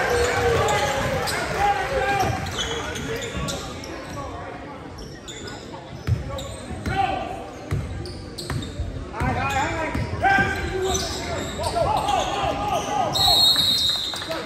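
Basketball game in a school gym: players and spectators shouting and calling out while a basketball bounces on the hardwood floor, all with the echo of the hall. A short, steady, high whistle sounds near the end.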